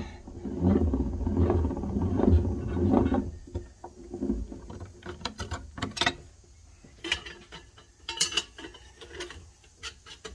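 Hand-cranked Harbor Freight ring roller turning as a metal strip is fed through its rollers, a rumbling rolling sound lasting about three seconds. It is followed by scattered metallic clicks and clinks as the curved strip is pulled off the rollers and handled.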